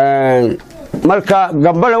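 A man's voice: one drawn-out syllable held for about half a second, then speech resuming about a second in.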